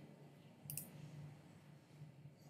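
A single faint computer mouse click about two-thirds of a second in, over near-silent room tone.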